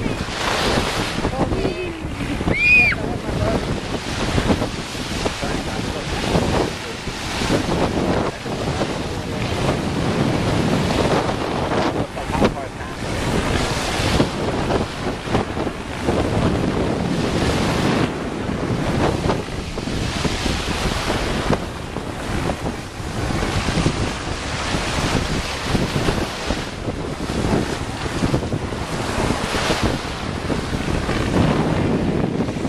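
Small ocean waves breaking and washing on a sandy shore, with wind buffeting the microphone. A brief high-pitched cry rises and falls about three seconds in.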